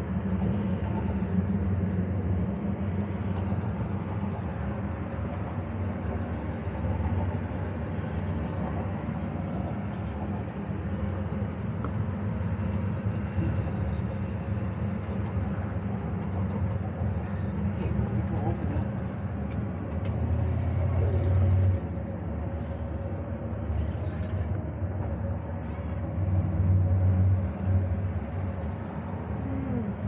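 Steady low rumble and wind noise inside a cable car gondola cabin travelling along its cable, swelling louder for a couple of seconds about two-thirds of the way through and again near the end.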